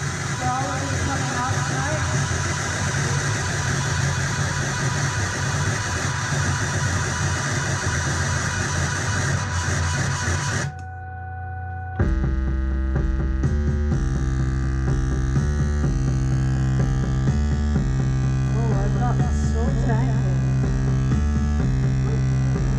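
Live electronic noise music from a rig of effects pedals and electronics. A dense wall of noise cuts off suddenly about ten seconds in. After a brief low drone, a new layer of heavy, low droning hum with stepping held tones comes in.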